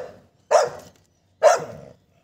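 Pit bull barking twice, about a second apart, in short, sharp barks.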